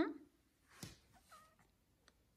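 Domestic cat giving a short meow at the start, then a brief noisy burst just before a second in and a small, higher chirping call soon after.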